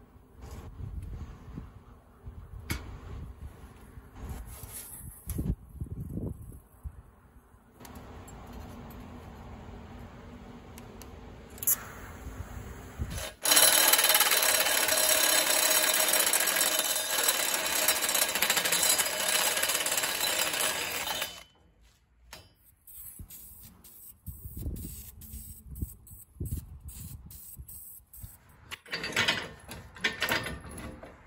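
A die grinder with a sanding drum grinding the end of a steel tube held in a vise: a loud, steady grind lasting about eight seconds that cuts off abruptly. Before it come scattered knocks and a quieter steady noise, and after it scattered metal clicks and clanks.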